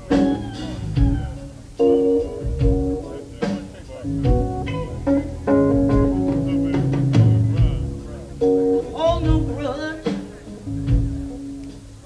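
Live band playing an instrumental passage: electric guitar lines with sustained notes over bass guitar and drums.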